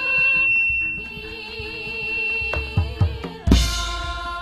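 Javanese gamelan music: a held high note, then a quick run of drum strokes, and a loud, short crash about three and a half seconds in.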